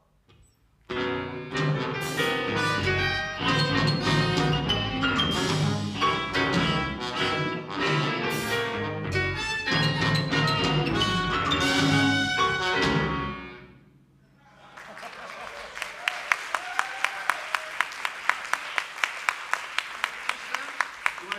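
Avant-rock band with trumpet, trombone, soprano saxophones, bass clarinet, electric guitar, bass, keyboards and drums playing a loud, dense ensemble passage that stops abruptly about two-thirds of the way through. Audience applause follows, with a steady clap about three times a second.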